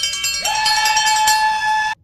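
A loud metallic ringing, bell-like, with rapid repeated strikes. A new higher tone joins about half a second in, and the sound cuts off abruptly just before the end, like an edited-in ringing sound effect.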